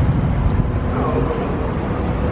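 City street traffic: cars passing, a steady road rumble.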